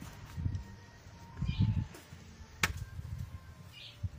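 Quiet handling sounds as corn tortillas are lifted off a hot comal: a few soft thumps and one sharp click about two and a half seconds in.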